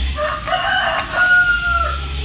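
A rooster crowing, one crow that ends on a long, drawn-out note, over a low steady rumble.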